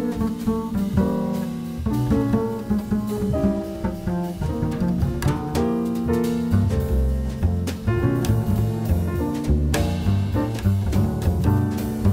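Jazz piano trio playing, with the upright double bass plucked prominently under piano chords and light drums.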